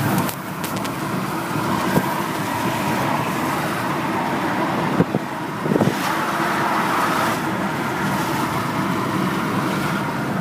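Steady road and engine noise inside a moving van's cabin, with a few brief knocks and clicks about two and five seconds in.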